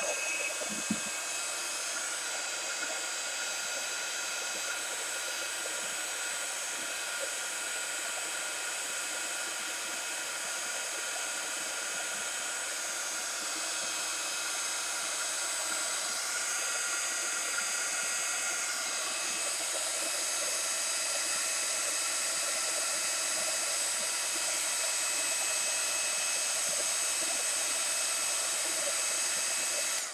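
Hand-held electric heat tool blowing steadily, drying a wet coat of gesso to stop the colours bleeding. It gets slightly louder in the second half and cuts off at the very end.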